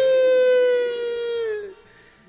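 A person's voice holding one long, loud drawn-out note, like a wailing call, its pitch sinking slowly until it stops shortly before the end.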